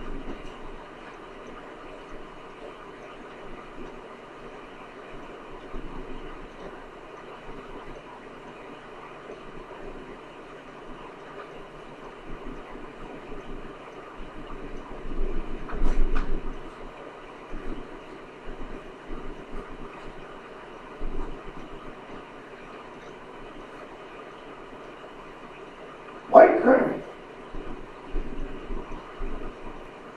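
Steady room hiss under the soft, scattered thuds and rustles of a martial artist's footwork and uniform as he moves through a kung fu form. There is one short, louder burst near the end.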